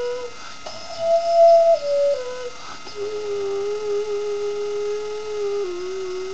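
Xun, the Chinese clay vessel flute, playing a slow descending phrase: a short held note, then a higher note stepping down through two lower ones to a long held low note of about two and a half seconds that dips slightly in pitch near the end.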